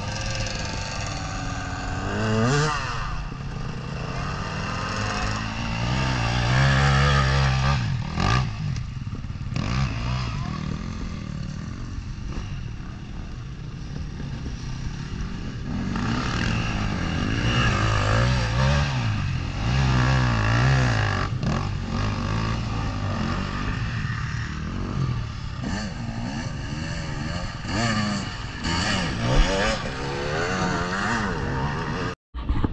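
Several enduro motorcycles revving hard on a muddy climb, their engines rising and falling in pitch again and again. The riders are working the throttle as the rear wheels spin and throw mud on the waterlogged, slippery track.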